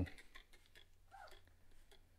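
Faint repeated clicks and short spritzes of a hand trigger spray bottle spraying leather cleaner onto a leather car seat.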